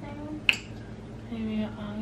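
A single sharp click about half a second in, with a woman's quiet voice murmuring around it.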